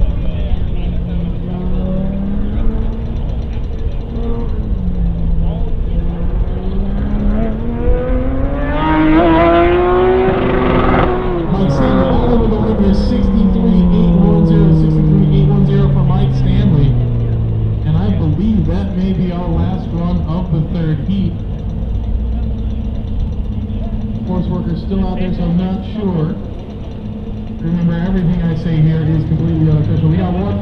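A car's engine on an autocross course, its pitch climbing and dropping again and again as the driver accelerates and lifts between the cones. The loudest moment comes about ten seconds in: the pitch climbs sharply, then falls away in one long sweep over the next several seconds.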